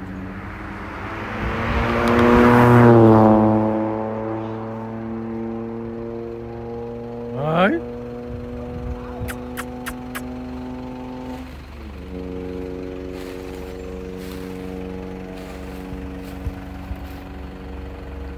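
A motor vehicle's engine passes with a swell of noise that peaks a few seconds in, its pitch dipping slightly, and then runs on at a steady pitch. The note shifts at about twelve seconds in. A quick rising whistle-like glide comes midway, and a few sharp clicks follow.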